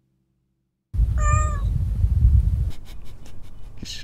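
About a second in, a cat meows once, briefly, over a loud low rumble, followed by a few light clicks.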